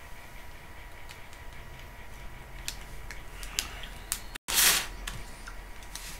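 Quiet room with a faint steady whine, small mouth clicks from chewing jelly beans, then a short loud rush of breath about four and a half seconds in, just after the sound briefly cuts out.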